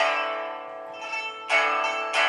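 Solo pipa playing: a loud strummed chord at the start rings and fades, a couple of light plucks follow, then a second strong chord about a second and a half in.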